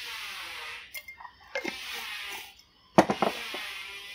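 Spoon scraping and scooping seasoning out of a jar and sprinkling the dry granules onto a bowl of chopped stuffing, in two hissy, grainy stretches with a few light clicks, then a sharp tap about three seconds in.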